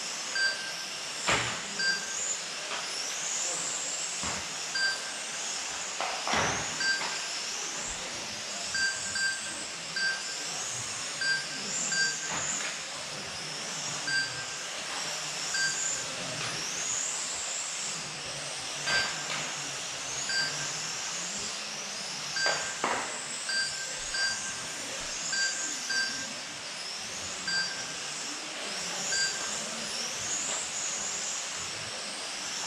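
Several 1/12th scale electric radio-controlled racing cars running laps, their motors whining high and gliding up and down in pitch as they accelerate and brake. Short electronic beeps at irregular intervals come from the lap-timing system as cars cross the line, with a few sharp knocks between them.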